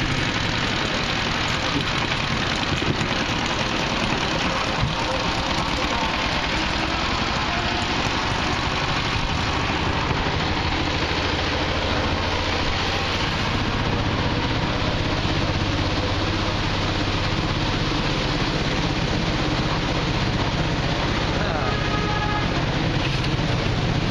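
A small vehicle's engine running steadily, mixed with road and wind noise, with a steady low hum getting stronger about halfway through.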